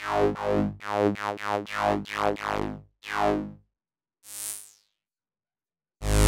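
MRB Tiny Voice two-oscillator subtractive synth playing short notes with its sub-oscillator added to VCO1. Each note starts bright and darkens quickly as the filter closes. About eight quick notes come first, then one fainter note, and the sound stops about five seconds in.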